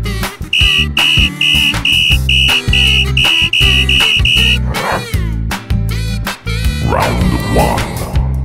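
A referee's whistle blown in ten short, even blasts at one high pitch, about two and a half a second, over cartoon background music with a steady bass beat. Two sweeping sounds follow near the middle and end.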